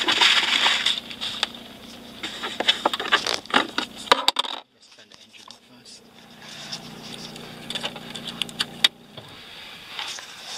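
Hands handling plastic dashboard trim and a tissue in a car's lower dash compartment: rustling with a quick run of clicks and light knocks, going briefly quiet about halfway through, then fainter clicks over a low hum.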